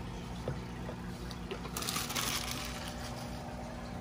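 Water poured from a plastic bowl into a plastic bin, a short splashing hiss about halfway through, over a steady low hum.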